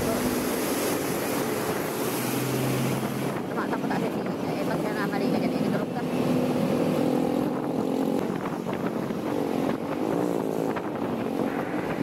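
Honda ADV 160 scooter's single-cylinder engine running at low speed in traffic, under steady wind noise on the microphone.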